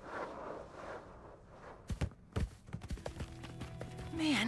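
Cartoon soundtrack: a soft rush of noise, a few sharp thumps about two seconds in, then background music with long held tones coming in about three seconds in.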